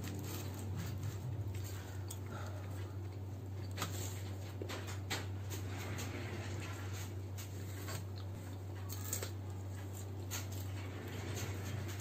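Two people chewing pizza close to the microphone: soft wet mouth sounds and many small irregular clicks, over a steady low hum.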